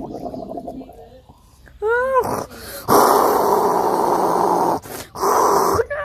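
A child's voice making toy-dinosaur roars for a Spinosaurus. There is a short cry that rises and falls about two seconds in, then a long rough roar, a shorter second roar, and another brief cry at the end.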